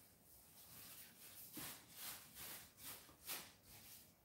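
Near silence, with several faint, short swishes of a Chinese ink brush stroking across semi-sized mulberry paper.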